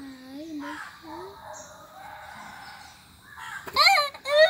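Birds calling in the background, with a short wordless hum from a person at the start and a burst of laughter near the end.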